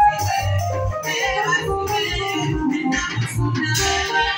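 Live band music played through a PA: an electronic keyboard and a drum kit over a steady, regular bass beat, with a woman singing lead into a microphone.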